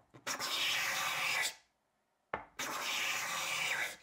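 Homemade scraper with a utility-knife blade set in a wooden block, drawn along a softwood board: two long scraping strokes of about a second each with a pause between, each opened by a light tick as the blade meets the wood.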